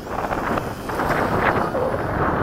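Strong wind on the microphone: a steady, dense rush with no clear tone.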